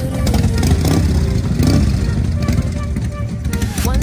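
A motorcycle engine running with a deep, steady rumble, amid people's voices.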